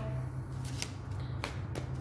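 A large deck of tarot cards being handled and shuffled by hand, with three short, sharp card snaps after cards fell out and the deck is gathered for another shuffle.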